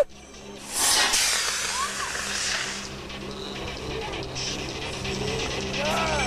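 A small rocket launching: a loud hissing whoosh starts about half a second in, runs for about two seconds and fades away.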